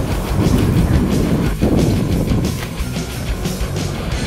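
Electric scooter riding along a city street: wind buffeting the microphone over a steady low rumble and rattle from the wheels on the pavement.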